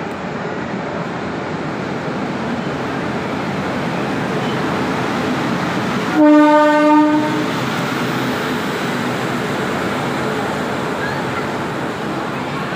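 Jan Shatabdi Express train passing through at speed, with a steady rumble of the train running past. About six seconds in, as the locomotive goes by, it gives one horn blast of about a second, the loudest sound.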